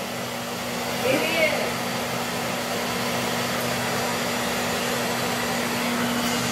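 A steady rushing noise with a constant low hum, like a running motor or fan, unchanged throughout.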